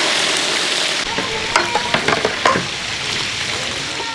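Raw quail pieces sizzling hard in hot oil in a large steel frying pan, just after being dropped in. From about a second in, a long-handled slotted metal spatula stirs them, adding scrapes and clinks against the pan.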